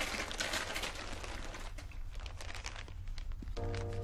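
A dense rustling noise with many small crackles, then soft film-score music with held chords comes in about three and a half seconds in.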